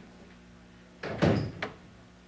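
A door opening about a second in: a sudden thump and a short creak, then a sharp click.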